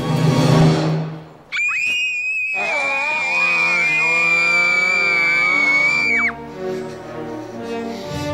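Film soundtrack music with a rushing swell. From about a second and a half in, a girl screams one long, loud, high scream, joined by other, lower screaming voices. The screaming cuts off suddenly after about five seconds and leaves the music.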